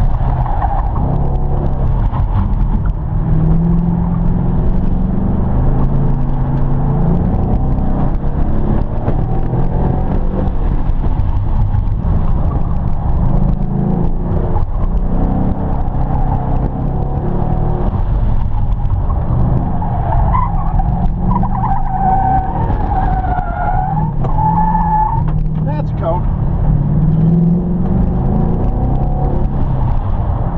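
Car engine heard from inside the cabin, rising and falling in pitch with throttle and gear changes as the car is driven hard through a cone course. Tires squeal in wavering tones from about twenty seconds in until about twenty-six seconds.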